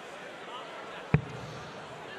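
A single dart thudding into a bristle dartboard, one sharp short impact about a second in, over a low steady background.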